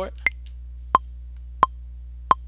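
Maschine 2 software metronome count-in ticking at about 88 BPM: a higher accented click on the downbeat, then two lower clicks about two-thirds of a second apart. A low steady hum runs underneath.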